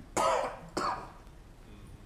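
A man clearing his throat: two short rasping bursts about half a second apart, the second shorter.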